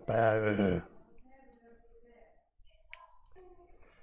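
A man's drawn-out hesitant voice sound for under a second, then quiet faint murmuring with a single sharp click about three seconds in.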